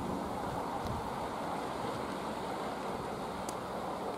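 Steady outdoor rushing noise, even throughout, with no clear single event: the ambience of a riverbank with a road close by.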